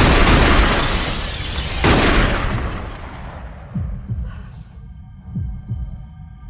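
Movie-trailer sound design: two loud crashing hits, one at the start and one about two seconds in, each dying away slowly. They give way to low paired thumps about every second and a half under a faint sustained tone.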